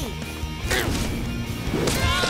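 Cartoon sound effects over background music: a swish about a third of the way in, then a sudden crash near the end.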